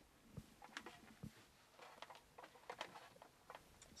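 Near silence with a few faint clicks and knocks: a plastic riot helmet being lifted and pulled on.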